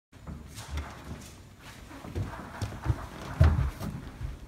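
Footsteps on a hard floor and an interior door being opened, a run of irregular thumps and clicks with the loudest thump about three and a half seconds in.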